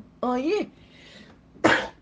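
A single short, loud cough about one and a half seconds in, after a brief spoken word.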